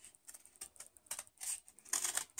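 Scissors snipping through several layers of folded paper in a quick series of short cuts, beginning about half a second in.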